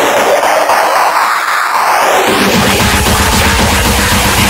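Uptempo hardcore electronic music played loud in a DJ set. The bass and kick drop out for about two seconds while a swooshing noise sweeps down and back up, then the heavy kick comes back in a little over two seconds in.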